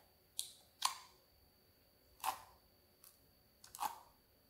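Clear slime being squeezed and kneaded by hand in a bowl, giving four short, sharp wet pops and clicks as trapped air escapes. They come irregularly, a second or so apart, the second one the loudest.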